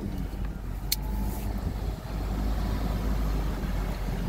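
Car engine idling with a steady low rumble, heard from inside the cabin while the car creeps forward in a drive-thru lane. A single sharp click sounds about a second in.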